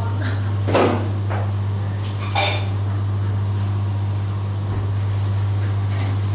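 A steady low hum, with a short rustling clatter about a second in and a brief clink about two and a half seconds in.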